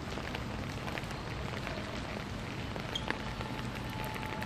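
Steady rain falling on wet pavement, an even hiss with scattered small drop ticks. A faint steady tone comes in about three seconds in.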